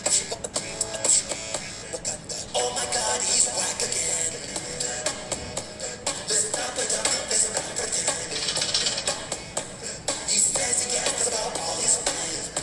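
A rap battle track: a hip-hop beat with a voice rapping over it.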